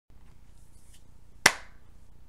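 A single sharp hand clap about one and a half seconds in, over a faint steady hiss.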